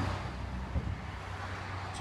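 A car's steady low hum with a light rush of road and wind noise.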